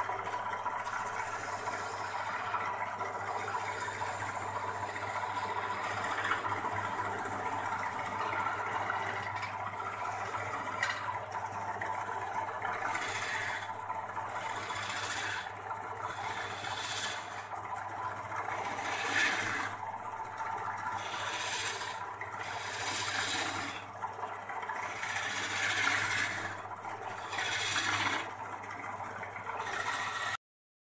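A wood lathe runs with a steady motor hum while a hand-held turning chisel scrapes against the spinning wooden spindle. In the second half the cutting comes in repeated strokes, roughly one a second.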